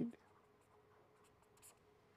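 Felt-tip marker writing and underlining on paper: a few short, faint strokes over a faint steady hum.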